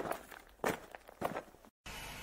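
Three footsteps, evenly paced about half a second apart, followed near the end by a faint steady hiss.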